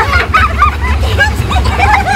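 Several people talking at once in overlapping chatter, over a steady low rumble.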